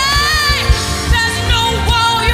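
Live gospel worship band with singers: a lead vocal slides up into a long held note at the start, then shorter sung phrases follow over a steady drum beat.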